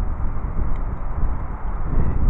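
Wind buffeting the microphone: a steady low rumble with a fainter hiss above it.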